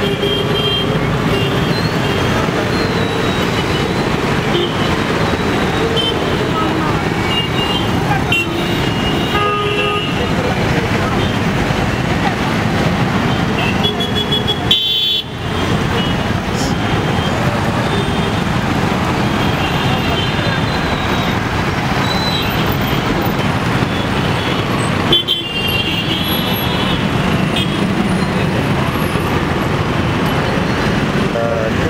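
Busy street traffic: motorcycle and car engines running steadily, with vehicle horns tooting briefly several times and voices in the background.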